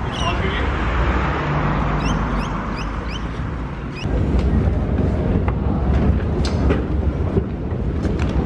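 Busy urban ambience while walking: a steady low rumble of traffic with indistinct voices, and a quick run of five short rising chirps about two seconds in. About halfway through the sound changes to the rumble and voices around a station escalator.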